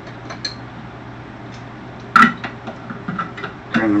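A can of mixed vegetables being opened by hand: a few faint clicks, then one sharp metallic snap about two seconds in, over a low steady hum.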